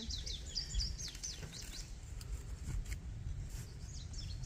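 Songbirds chirping, a run of quick high chirps that sweep downward in pitch over the first couple of seconds and then thin out, over a low steady rumble.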